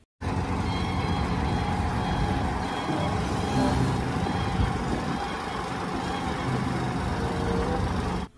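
Heavy dump truck running steadily while its hydraulic hoist raises the tipper bed: a continuous, even engine and hydraulic drone.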